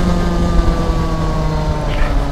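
125cc go-kart engine running steadily, its pitch easing slowly downward, with wind rumbling on the onboard microphone.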